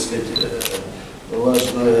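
A man speaking Russian, breaking off in a short pause; a single short click falls in the pause before he goes on.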